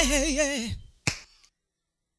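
The end of a song: a held sung note with vibrato fades out in the first second. About a second in comes a single sharp snap.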